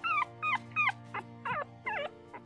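A pup whimpering in distress: a quick run of short, high, falling whines, about three a second. Soft background music runs underneath.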